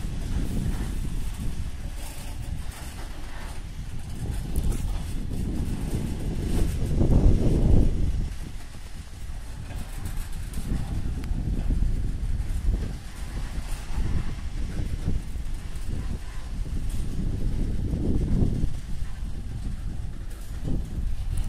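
Rumble of a freight train's open gondola wagons rolling past on the rails. The noise swells louder about seven seconds in and again near the end.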